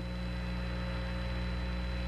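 Steady electrical hum with a faint hiss over it: the background noise of the 1969 Apollo 11 lunar-surface transmission audio between Neil Armstrong's words.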